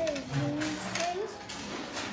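Light clicks of Cuisenaire rods being picked up and set down on a cardboard board, over quiet background voices.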